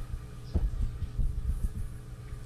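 Microphone handling noise: a run of low thumps and bumps starting about half a second in, over a steady low electrical hum on the sound system.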